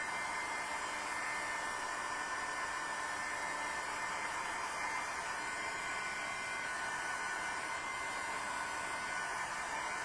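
Steady airy whooshing of a small electric blower running without change, with a faint steady high tone in it.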